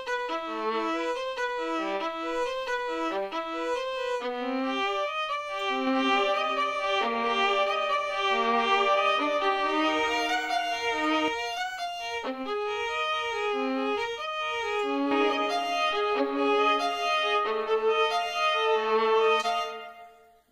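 Sampled violin from a free Kontakt library playing a simple melody of single notes, heard dry at first; partway through, an epicVerb reverb is switched on, so the notes run together with more depth and room ambience.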